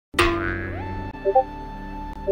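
Silence broken about a tenth of a second in by a sudden cartoon 'boing' sound effect, falling in pitch. Background music then carries on, with a held chord and short repeated notes.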